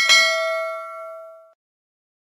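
Notification-bell sound effect from a subscribe animation: a short click, then a single bright chime that rings and dies away after about a second and a half.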